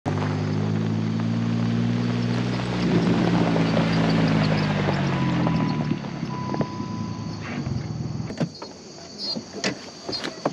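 Jeep Wrangler engine running as it drives up and slows to a stop, its pitch dropping slightly as it slows. A steady beep sounds for about two seconds as it stops, then clicks and knocks of the door opening and a person stepping out near the end.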